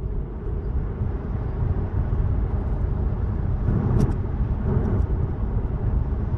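Road and tyre noise inside a Tesla's cabin as the electric car speeds up from about 30 to 45 mph, getting louder over the first couple of seconds. There is one sharp click about four seconds in.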